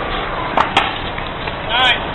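Two sharp smacks of a small rubber ball in quick succession about half a second in, as it is punched and strikes the handball wall. Near the end, a short shout with a wavering pitch, over steady background noise.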